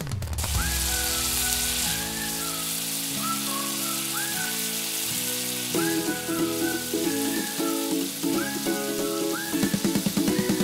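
Background music of held notes with short rising slides, over a steady frying sizzle from bread toasting in a miniature frying pan.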